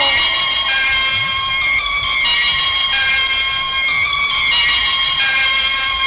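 Radio station jingle: held musical chords that step to a new pitch every second or two.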